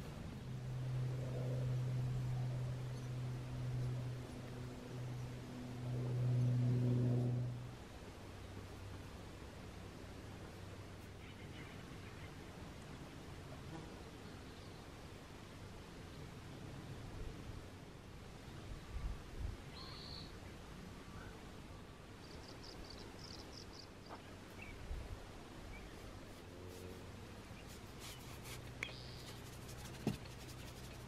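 A low buzzing hum that swells and dips for the first eight seconds, then stops suddenly. After it, faint outdoor quiet with a few short high bird chirps and a brief trill.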